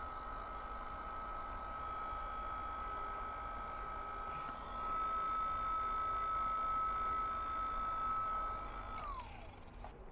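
Small electric heat gun running with a steady whine while it shrinks heat-shrink tubing on wire leads. It gets a little louder about halfway, and about nine seconds in it is switched off, the whine falling in pitch as the fan spins down.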